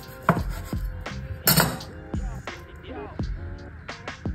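Kitchen knife cutting through a crisp fried aborrajado (cheese-stuffed ripe plantain fritter) onto a wooden chopping board: a few sharp knocks and crunches, the loudest about a second and a half in, over soft background music.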